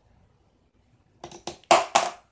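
A boy's quick breathy vocal bursts, like gasps. Four come in a row starting about a second in, and the last two are loud.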